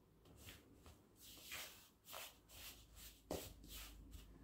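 Faint scraping of a fork stirring melted butter into flour in a mixing bowl, a run of soft irregular strokes as the mix turns crumbly, with one sharper click about three seconds in.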